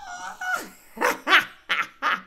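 A man laughing in several short, separate bursts.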